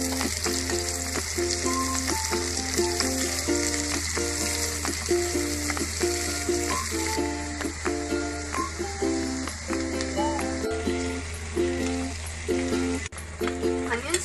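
Sliced onions sizzling in hot oil in a pan as they are sautéed and stirred, a steady frying hiss. Background music with a repeating melody plays over it.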